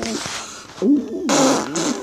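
A man making wordless, wavering vocal noises, with a loud breathy, raspy burst a little past the middle.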